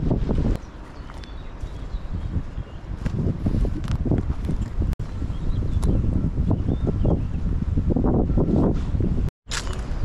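Footsteps on a dirt woodland path, with wind buffeting the microphone and faint birds chirping. The sound drops out briefly near the end.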